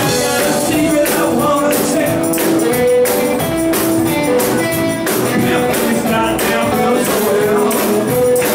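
Live blues-rock band playing: electric guitar, drums and a male lead singer, with a steady drum beat.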